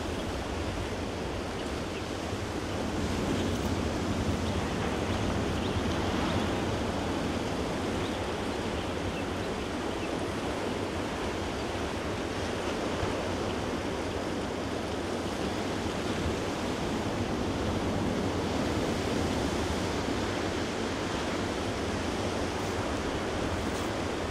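Steady rushing noise of ocean surf on a beach, swelling slightly now and then.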